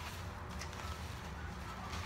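Faint rustling of tissue-paper gift wrapping being handled and pulled open, over a low steady hum.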